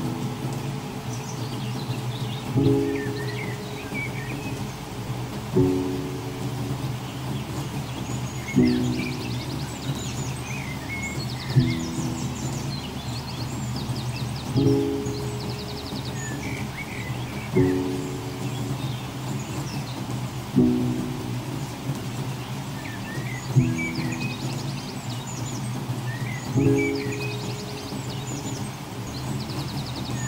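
Slow, soft lullaby music: a pitched note sounds about every three seconds and fades away over a steady low hum. Small birds chirp on and off behind it.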